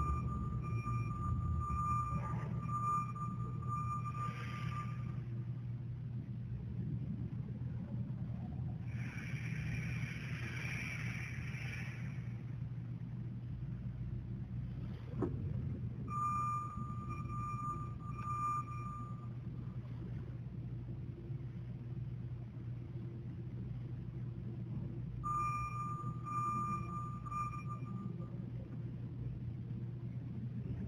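Runs of rapid, evenly pulsed high electronic beeps, heard three times, over a steady low hum; a hissing burst comes in the middle, and a single sharp click follows it.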